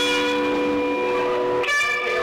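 A live rock band's amplified instruments hold a sustained chord that rings on steadily, then cuts off suddenly a little over a second and a half in. A short, bright tone follows near the end.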